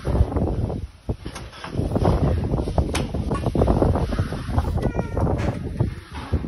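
Wind buffeting the microphone, with a few sharp knocks scattered through it and a faint voice near the end.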